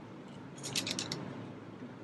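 A camera shutter firing a rapid burst of about six sharp clicks within half a second, a little way in, over a low steady room hum.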